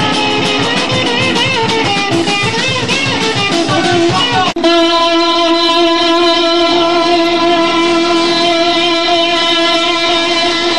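Distorted electric guitar on a 1980s punk demo tape recording: wavering, bending notes, then a momentary dropout about four and a half seconds in, after which a single distorted note is held steady.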